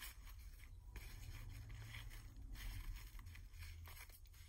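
Faint rustling of ribbon fabric as fingers press a hot-glued metal alligator clip onto a grosgrain ribbon bow, over a low steady hum.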